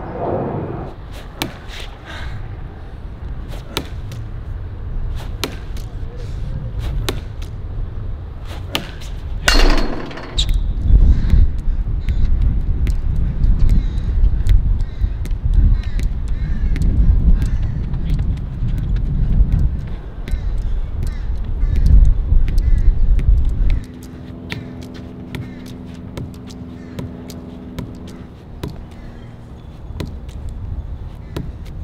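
A hard rubber lacrosse ball thrown against a concrete wall and caught in a lacrosse stick, a long string of sharp knocks and clacks at an irregular pace. A heavy low rumble runs under the middle part, and a steady low hum takes over in the last few seconds.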